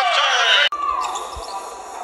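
Basketball game sound on a hardwood court: the ball bouncing and sneakers squeaking, over arena crowd noise. The sound breaks off abruptly under a second in and resumes on a different play.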